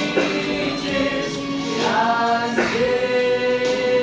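Two men singing a slow song together live, unamplified-sounding and close to the microphone, with a long note held steady near the end.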